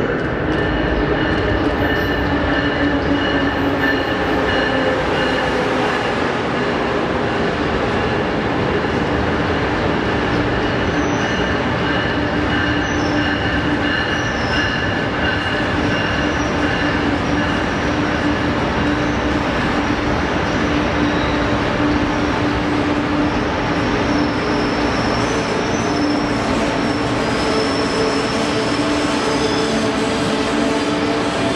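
Amtrak Acela Express trainset pulling in alongside the platform and slowing toward a stop, its cars passing close by. Steady high whining tones sit over the continuous noise of the wheels on the rails.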